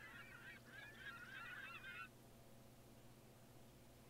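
Faint chorus of many overlapping bird calls that stops about two seconds in, over a low steady hum.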